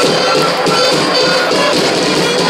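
Drum corps playing live: field drums beating a steady rhythm under high fifes playing a tune.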